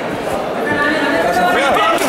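Fight crowd shouting and talking over one another, many voices at once.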